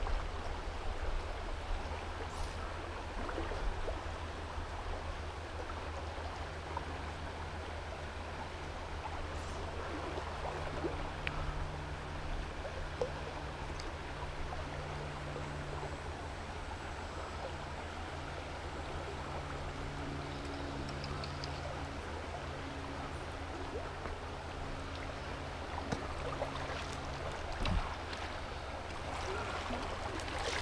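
Steady rush of a high-water river current flowing past, an even wash of water noise with a low rumble beneath it.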